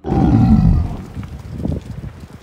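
A loud roar sound effect that bursts in suddenly, drops in pitch over about a second, then trails off in a rough low rumble.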